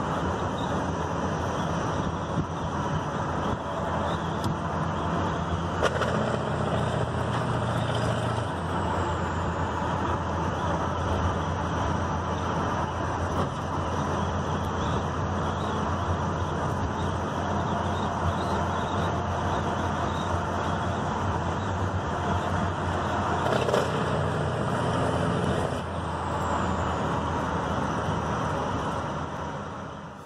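Steady road and engine noise inside a moving car's cabin, its engine note shifting a few times as it drives.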